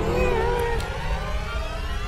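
A short wordless cartoon-character voice sound that rises and falls in pitch, lasting under a second, over a steady low rumble.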